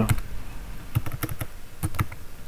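Typing on a computer keyboard: a handful of separate keystrokes at an irregular pace.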